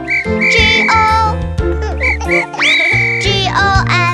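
Whistle toots over children's-song backing music: two short toots and a long one, then the same pattern again, the second long toot sliding up at its start.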